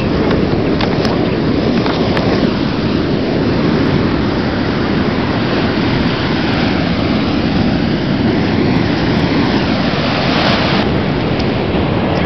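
Steady, loud rushing noise of a moving vehicle heard from inside: road and engine rumble with wind hiss.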